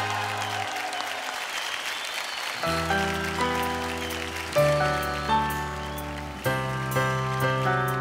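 Studio audience clapping while the last held notes of the song fade. About two and a half seconds in, electronic keyboards begin slow sustained chords over deep bass notes.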